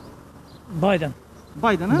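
A man's voice making two short vocal sounds with a rise and fall in pitch, about a second apart, starting just under a second in.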